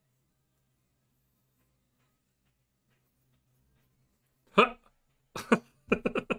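Near silence, then about four and a half seconds in a man bursts out laughing. Two loud single laughs with falling pitch are followed by a quick run of laughter at the end.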